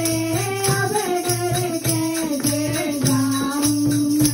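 A woman singing a Hindi devotional bhajan into a microphone, with a hand drum and jingling percussion beating a steady rhythm underneath.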